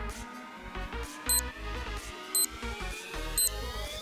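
Electronic background music with a steady beat, over which three short, high electronic beeps sound about a second apart: a countdown to the end of a workout interval.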